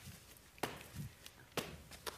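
Soft thuds of a person hopping like a frog across a studio floor: two sharp landings about a second apart, with a softer thump between them.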